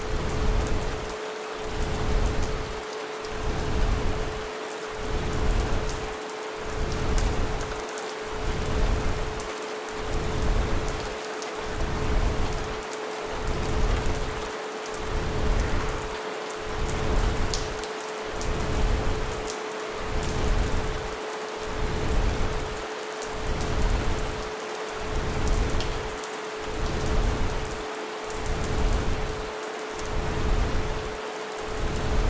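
Rain sound mixed with a steady pure tone at 432 Hz, over deep noise that pulses on and off slowly and evenly: an isochronic pulse track for sleep.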